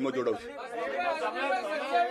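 A man's voice finishes a short phrase, then several voices talk over one another in a large room: steady crowd chatter.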